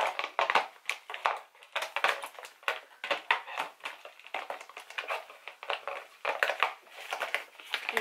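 Small cosmetic tubes, bottles and jars being handled and set into a box lid one after another. They make a quick, irregular run of clicks and knocks, with some crinkling of packaging.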